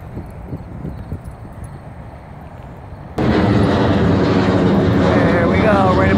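Quiet outdoor background of passing traffic, then about three seconds in a loud, steady jet airliner engine noise starts abruptly as the plane flies low overhead.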